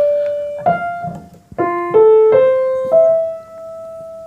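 Piano played one note at a time: a held note gives way to a higher note that rings out, then after a short gap four single notes climb step by step, the last one left ringing. The two rising runs fit the treble stave's line notes E-G-B-D-F and its space notes F-A-C-E.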